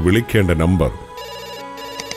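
A man's voice briefly, then an electronic telephone ringtone starts about a second in, a fast trilling ring in two short bursts.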